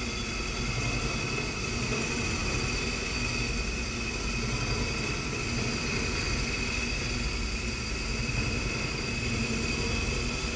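Heckert CNC machining centre running: a steady mechanical hum over a low rumble, with a constant high whine from the spindle and axis drives as the large disc cutter is moved into position under the cylinder head.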